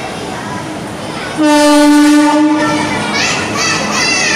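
Air horn of an arriving WAP-4 electric locomotive, one steady single-note blast of about a second and a half that starts suddenly just over a second in, over the rumble of the approaching train.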